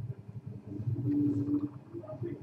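Film soundtrack playing back from a media player: a low rumbling ambience, with a steady low hum held for under a second about halfway through.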